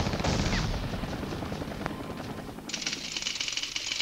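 Automatic-weapon fire from archival combat film: dense rapid shots in the first second, thinning out, then a faster, higher rattle of fire from nearly three seconds in.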